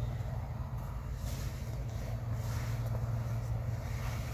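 A steady low drone, like a distant engine or traffic, with soft rustles about a second and two and a half seconds in.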